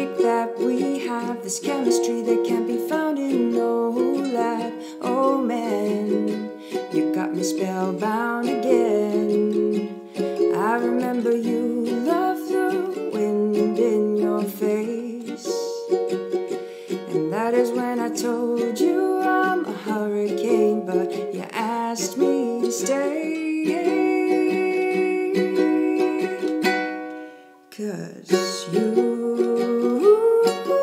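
A woman singing an indie love song while strumming a ukulele, in a small room. The music drops out briefly about two seconds before the end, then resumes.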